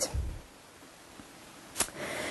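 A pause in a lecture-hall sound feed: faint steady room hiss through the podium microphone, with a low thump just after the start and a single sharp click near the end.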